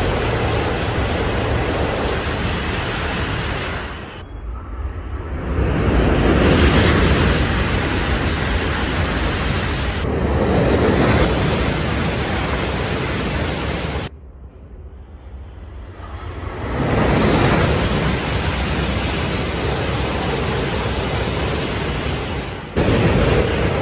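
JR East E5 series Shinkansen trains passing at high speed: a loud, steady rush of air and wheel-on-rail noise. It comes in several spliced clips that cut off abruptly about 4, 10 and 14 seconds in, and after a quieter stretch the roar swells up again about 17 seconds in as another train comes through.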